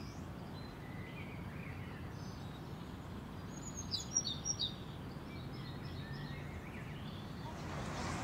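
A bird chirping several times in quick succession about halfway through, high and brief, over a steady low outdoor background hum. Fainter chirps follow.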